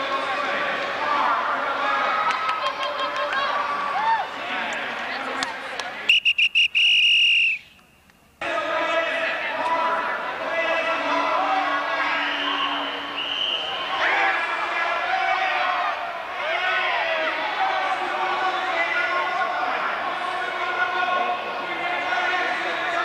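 Electronic BMX start-gate cadence: a few short beeps and then one long high tone, the loudest sound here, about six seconds in, after which the sound drops out for under a second. Around it runs the reverberant hubbub of a crowd and voices in an indoor arena.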